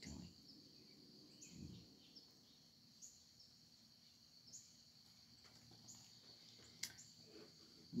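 Near silence: a faint steady high insect drone, with a short rising chirp about every second and a half and a single click near the end.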